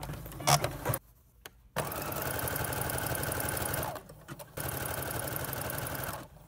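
Electric sewing machine stitching in two steady runs of about two seconds each, with a short pause between. A couple of sharp clicks come in the first second, before the first run.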